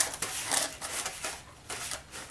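Fingers pressing crumbly pastry mixture into a pan lined with baking paper: soft, irregular rustling and crinkling of the paper and crumbs.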